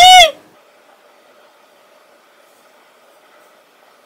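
A woman's short, very loud squealing laugh that rises sharply in pitch and then falls, lasting under a second, followed by quiet room tone.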